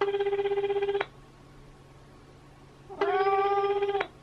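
Japanese telephone ringback tone playing through an iPhone's speakerphone while the call waits to be answered: a low tone with a fast flutter, one second on and two seconds off, sounding twice.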